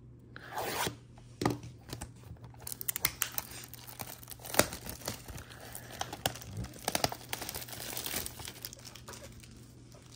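Plastic shrink wrap being torn and crinkled off a cardboard trading-card box: a rasping tear about half a second in, then a long run of crackling and crinkling with one sharp snap around the middle.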